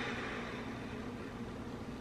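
Steady low room hum with a faint even hiss, and nothing else.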